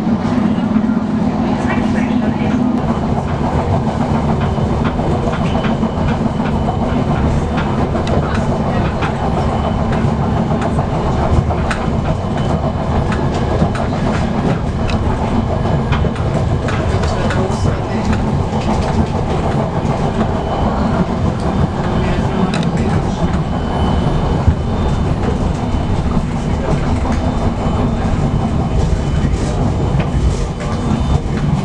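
A moving suburban train: steady rumble of the running gear with irregular clicks and clatter of the wheels over the rails. A low hum at the start fades out after a few seconds.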